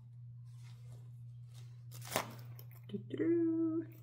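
Soft rustling and crinkling of a quilted fabric project folder with clear vinyl pockets being handled and opened, with a sharper crinkle about two seconds in. A steady low hum runs underneath.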